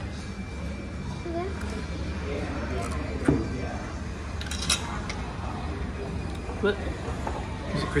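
Restaurant dining-room ambience: a steady low hum with faint background voices and a few short clicks of cutlery or tableware.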